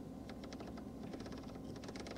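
Aurus Senat climate-control rotary knob turned by hand, giving a quick run of faint, crisp detent clicks: the sign of a precise, play-free knob mechanism.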